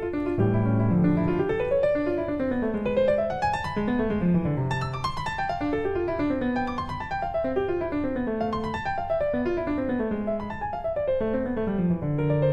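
Background piano music: flowing runs of notes that rise and fall over a steady lower accompaniment.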